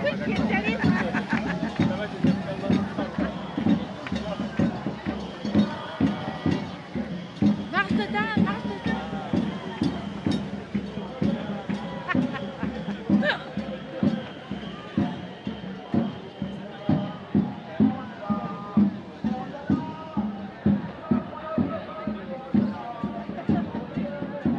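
Crowd of people talking over music with a steady beat, about one and a half beats a second.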